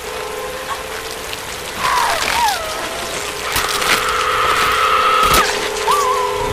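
Heavy rain pouring down over a steady hum. Over it a woman cries out in rising and falling strained cries, then holds one long scream, with a few sharp cracks in the second half.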